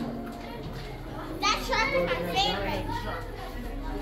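Children's high-pitched voices calling out and chattering, loudest in a few quick shouts from about a second and a half in, over a low steady background hum.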